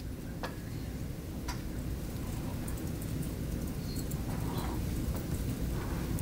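Low steady rumble of room background noise, with a few faint clicks in the first couple of seconds.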